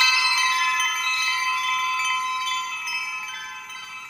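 Chime-like ringing tones at many pitches sounding together and slowly fading away.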